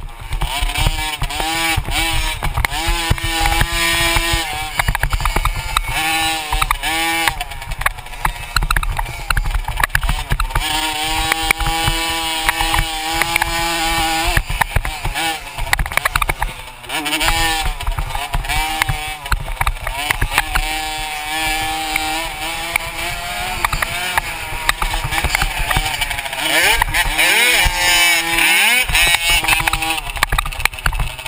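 Dirt bike engine revving hard, its pitch climbing and then dropping again and again with gear changes and throttle, over heavy wind buffeting on the microphone.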